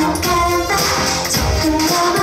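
K-pop dance song with female group vocals over a steady beat, sung melody lines gliding between notes.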